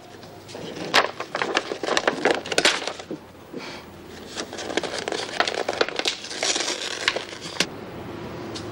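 A run of light knocks and rustles from books and papers being handled on a table, thickest in two spells with a quieter gap about halfway.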